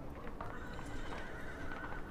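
A single long, high, steady call, like an animal's, held for about a second and a half over a low background rumble.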